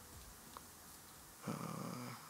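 Near quiet, then near the end a man's short low hum through closed lips, held steady for about half a second.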